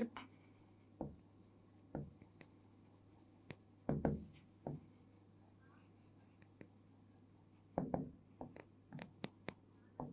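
Marker pen writing on a whiteboard: a series of short, faint strokes, scattered at first and coming closer together near the end.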